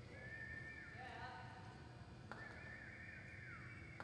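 A horse whinnying twice. Each faint call lasts about a second and a half, holding a high pitch and then falling away.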